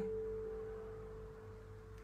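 A single held note of the song's instrumental accompaniment, ringing on as one steady tone and slowly fading in a gap between sung lines.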